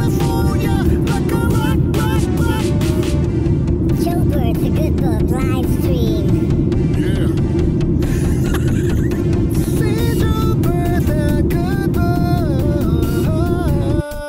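Background music: a stepped melody line over a dense, steady low layer.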